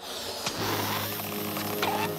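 Cartoon sound effect of gas rushing from a tank through a hose into a balloon as it inflates. A steady hiss with a low hum starts abruptly as the valve opens.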